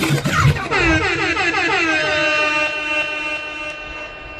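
The end of a soca DJ mix: the beat cuts out just under a second in, leaving one long horn-like chord. The chord slides slightly down in pitch at first, then holds and slowly fades.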